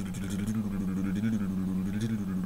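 A man's drawn-out wordless moan: one long, slowly wavering tone of the voice lasting a few seconds.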